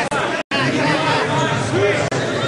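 Several voices of onlookers talking and calling out over one another around a grappling mat, with the sound cutting out completely for a moment about half a second in.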